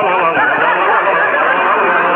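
A man singing a wordless "la, la" tune in a wobbly, wavering pitch.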